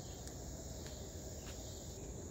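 A steady, high-pitched chorus of insects trilling without a break, over a low rumble.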